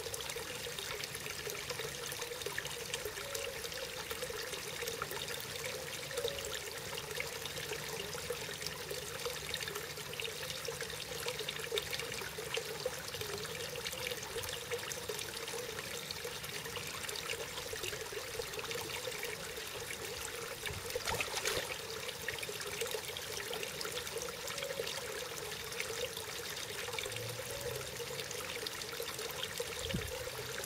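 A thin stream of water from a small pond spout trickling and splashing steadily into the pond surface, briefly louder about two-thirds of the way through.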